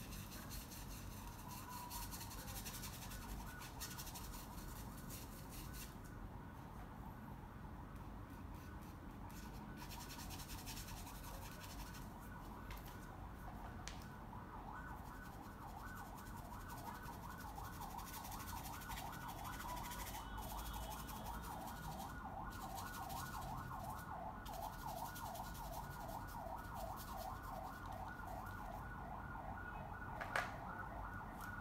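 Faint scratching of a paintbrush laying acrylic paint on canvas. From about halfway through, a faint, fast-warbling tone runs in the background and grows a little louder.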